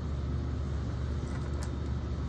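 Steady low background hum filling a pause, with no distinct event.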